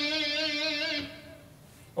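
Electric guitar playing a pentatonic lick moved up to the next pentatonic pattern, ending on a held note with vibrato that stops about a second in.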